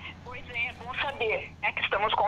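Speech over a telephone line: a woman talking on a phone call, her voice thin and narrow, with a faint low hum on the line.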